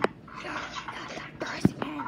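A child whispering breathily close to the microphone, with a sharp click at the start and another about a second and a half in.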